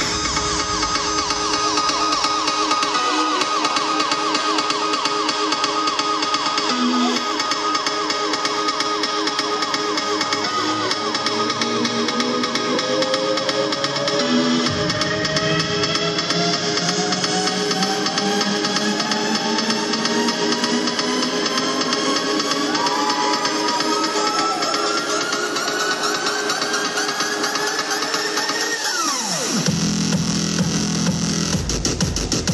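Loud electronic dance music from a live DJ set over a club PA. A long build-up runs through it: the deep bass is thin at first and comes back about halfway. A rising synth sweep climbs slowly over the second half, then drops away sharply just before the full bass hits again at the very end.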